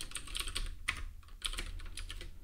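Typing on a computer keyboard: an uneven run of keystroke clicks, several a second.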